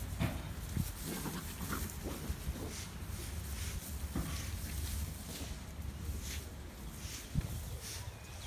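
A small dog making short scattered sounds as it runs about in long grass, over a steady low wind rumble on the microphone.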